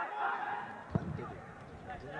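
Players shouting across a football pitch, one loud call carrying on into the first half-second, with a single sharp thud about a second in.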